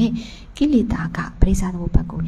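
A woman speaking Burmese into a handheld microphone.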